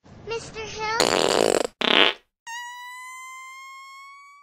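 Chopped-up voice snippets, then a loud rasping burst about a second in and a shorter burst just after. From about two and a half seconds a steady beep-like tone with overtones sounds, rising slowly in pitch.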